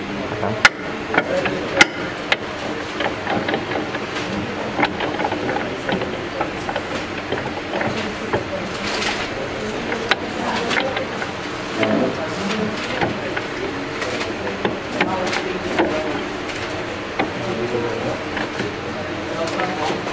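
Sharp metallic clicks and clanks of the spur gears in an opened Mahindra Jeep gearbox as a gear is slid along its shaft and meshed by hand, with the loudest two clicks about a second apart near the start.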